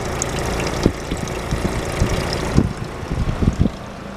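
Antique Westinghouse vending-machine refrigeration compressor running steadily in its on-cycle, with several short knocks over it in the second half, as the level drops.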